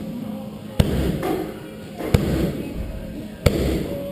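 Three Muay Thai strikes landing on pads held by a trainer, about 1.3 seconds apart, each a sharp smack with a low thud that hangs briefly in the room.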